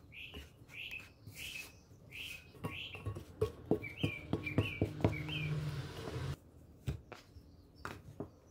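A silicone spatula and plastic bench scraper scrape and tap against a ceramic bowl while working crumbly scone dough, with short high chirps repeating about twice a second through the first part. A low hum comes in near the middle and cuts off suddenly.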